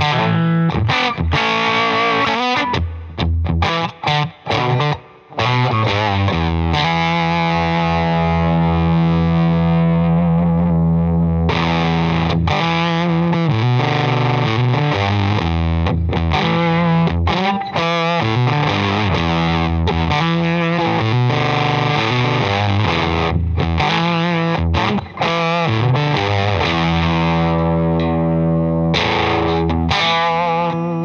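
Electric guitar played through a Wrought Iron Effects H-1 germanium fuzz pedal: thick fuzzed chords and notes, short choppy stabs with gaps in the first few seconds, then long sustained chords ringing out.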